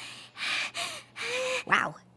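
A cartoon pony's voice gasping rapidly in fright: about four short, sharp gasps in quick succession, then a brief voiced sound near the end.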